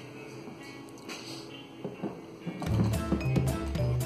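A DynaCraft 24V Disney Princess Carriage ride-on toy switched on with its key, its built-in speaker starting to play electronic music with a repeating bass beat about two-thirds of the way in.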